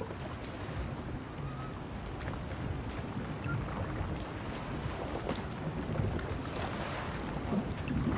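Sailing-ship ambience below deck: a steady wash of sea and wind, with faint scattered creaks and ticks.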